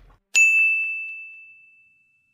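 A single bell-like ding, used as a scene-transition sound effect: struck sharply about a third of a second in, one clear ringing tone fading away over about a second and a half.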